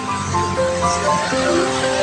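Background music of held tones changing note in steps, over a steady hiss.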